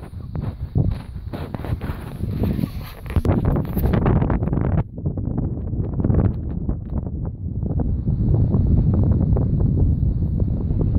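Strong wind buffeting the microphone: a loud, gusty low rumble that rises and falls.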